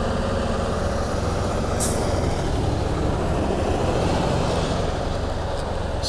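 A 2015 Can-Am Spyder RT three-wheeled motorcycle running steadily under way, its engine heard under wind and road noise. The sound swells a little mid-way and then eases. There is a short click about two seconds in.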